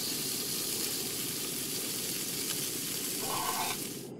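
Steady frying sizzle in a frying pan, easing slightly near the end.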